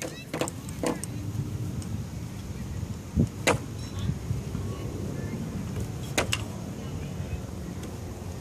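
Rope and a PVC pipe goal frame being handled: several sharp clicks and knocks, a dull thump about three seconds in, over a steady low rumble.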